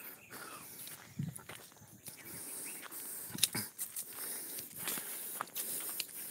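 Footsteps of a person walking through tall grass and brush, with irregular crunches and stalks rustling against the walker. A steady high hiss joins about two seconds in.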